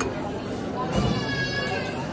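Diners' chatter in a large buffet hall, with a brief click at the start and a drawn-out voice rising over the murmur from about a second in.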